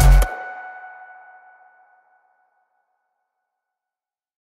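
Electronic background music with a heavy bass beat that cuts off about a quarter of a second in, leaving a fading tone that dies out in under two seconds.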